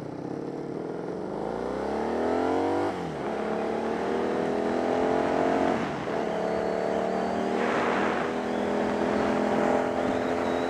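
Motorcycle engine accelerating through the gears, heard from the bike: the pitch climbs, drops sharply at an upshift about three seconds in, climbs again, drops at a second upshift near six seconds, then pulls steadily. A short rush of noise comes around eight seconds in.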